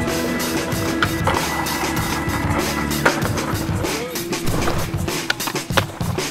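Skateboard rolling on pavement, with sharp clacks of the board hitting the ground, the loudest about a second in and again about three seconds in, under background music.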